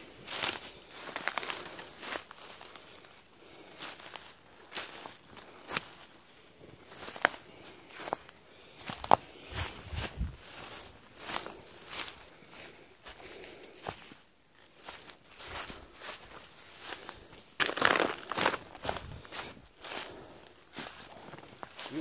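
Footsteps walking through forest undergrowth and leaf litter, an uneven stepping about once or twice a second with rustling of brushed plants and a few sharp clicks.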